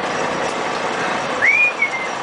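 Steady hiss and rumble, with a short whistle about one and a half seconds in that rises and then holds its pitch for about half a second, followed by a brief second note.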